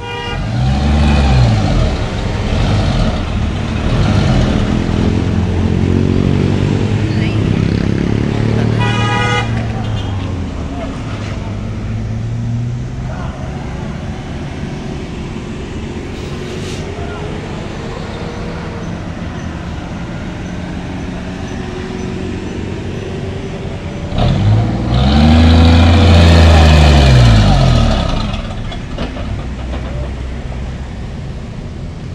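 Heavily loaded diesel cargo truck labouring up a steep grade, its engine revving up and falling back at the start and again, loudest, about 25 seconds in. A vehicle horn toots briefly about nine seconds in.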